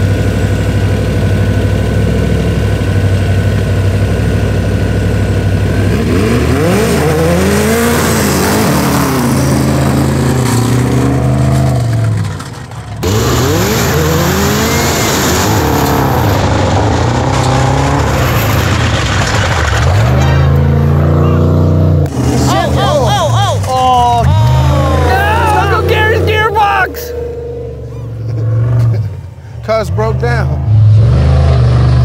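Race engines of a methanol-burning, Volkswagen-powered sandrail and an Ultra4 Jeep Wrangler revving hard in a dirt drag race. A steady engine drone comes first. From about six seconds in, the pitch climbs and drops again and again through the gear changes. It turns quieter near the end, as the sandrail breaks down with engine damage.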